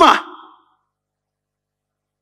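A man's raised lecturing voice trails off in a falling, breathy end to a word about half a second in, followed by dead silence.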